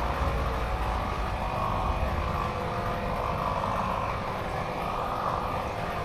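A steady low mechanical drone with a faint hum running through it, swelling slightly in the middle.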